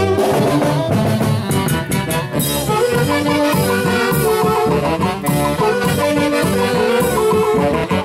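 A Huánuco orquesta playing a huaylas, with brass instruments carrying the melody over a steady dance beat.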